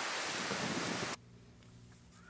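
Wind blowing on the camera's microphone outdoors: a steady hiss that cuts off suddenly about a second in, leaving only a faint low room hum.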